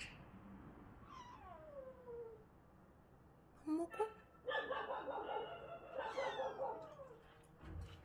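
A cat meowing: a short falling meow about a second in, then a longer, louder drawn-out yowl from about halfway through that drops in pitch as it ends.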